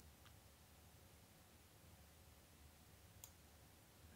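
Near silence: faint room tone with two faint computer-mouse clicks, a weak one just after the start and a sharper one about three seconds in.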